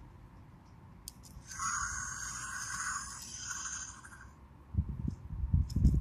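An Untamed Fingerlings dinosaur toy giving a rasping electronic growl from its small speaker, lasting about two and a half seconds from a little over a second in. Dull handling rumble follows near the end.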